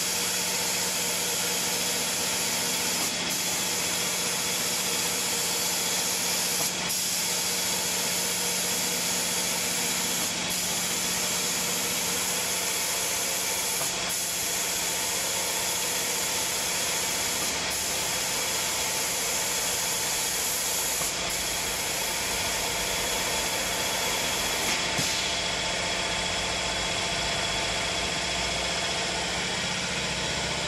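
Automatic paint-spraying machine's air-atomising spray guns hissing steadily over a steady machine hum. The hiss breaks briefly about every three and a half seconds, and thins near the end.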